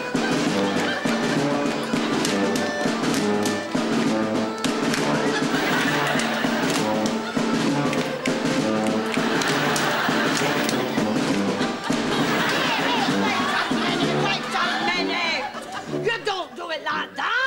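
A German oompah band of brass and drum plays a lively folk-dance tune in a steady beat, with many sharp slaps and stamps from the dancers. The music stops near the end.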